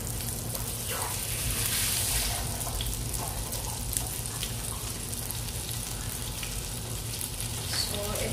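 A knob of butter melting and sizzling in hot oil in a non-stick frying pan: a steady hiss with small crackles as it foams, over a steady low hum.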